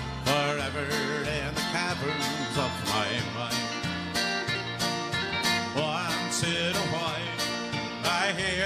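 Country band playing an instrumental break between verses: a lead melody with bending, wavering notes over electric guitar, bass guitar and a steady drum beat.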